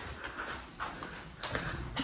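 A few soft footsteps on a hardwood floor, evenly paced at walking speed.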